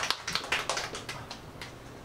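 Scattered hand claps from a small crowd after an introduction, thinning out and fading over the two seconds.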